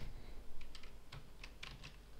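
Computer keyboard keys clicking in a short, irregular run of about eight light clicks, picked up by the desk microphone.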